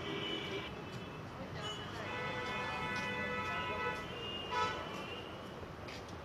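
Road traffic noise with a vehicle horn held for about two seconds, starting about two seconds in, and shorter horn notes near the start and the end, over voices in the background.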